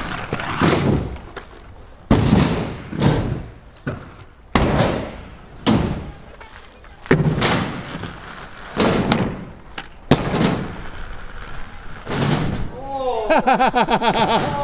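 Inline skate wheels rolling and striking rough concrete in a series of pushes and landings: a sharp hit every one to two seconds, each fading quickly.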